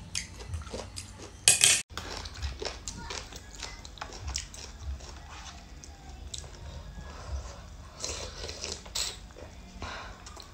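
Close-miked eating of noodle soup: chewing and slurping, with chopsticks and then a spoon clicking against the noodle tray. There is a short, very loud burst about one and a half seconds in, followed by a brief dropout.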